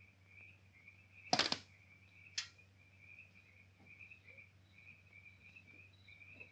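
Crickets chirping steadily in the night, broken by two sharp clatters: a louder one a little over a second in and a shorter one about a second later.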